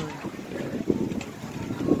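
People laughing, with wind buffeting the microphone.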